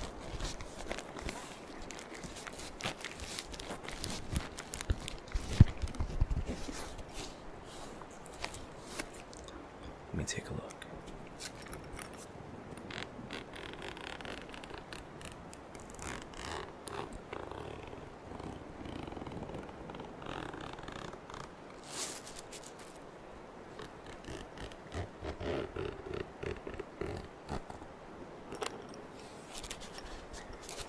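Hands rubbing, scratching and tapping on a zippered hard-shell first aid kit case, with many small clicks and a louder knock about five and a half seconds in. A steady rainstorm ambience runs underneath.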